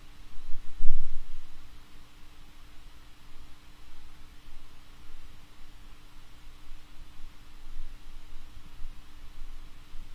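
Empty-room tone: a steady hiss and a faint steady hum, with low rumbling and one dull low thud about a second in.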